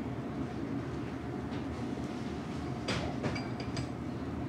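Steady low background rumble with a few sharp clinks of tableware near the end, chopsticks tapping small ceramic dishes.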